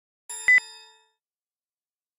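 A single bell-like ding with two quick sharp clicks just after it, ringing away within about a second.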